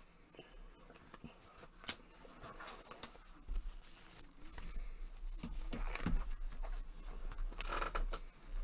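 Faint handling sounds of a trading-card box and its packaging: a few scattered clicks, then denser rustling and scraping from a few seconds in, over a low steady hum.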